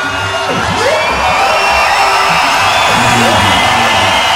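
Live DJ turntable set: music with a pulsing bass and sliding pitch sweeps, over a cheering crowd.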